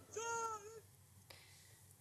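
A faint, drawn-out human cry from the crowd, one held pitched call lasting under a second near the start, then near silence.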